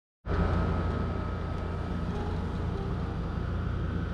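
Steady low rumble of background noise with a faint, steady high whine running under it; no distinct event stands out.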